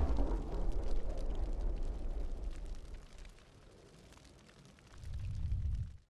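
Intro sound effect of an explosion: a deep boom with crackling that rumbles and fades over the first few seconds, then a second low swell that cuts off suddenly.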